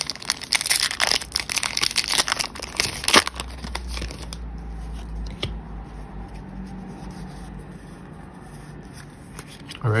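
Foil booster-pack wrapper crinkling and being torn open for about three seconds, ending in one sharp crackle, then only a faint low hum.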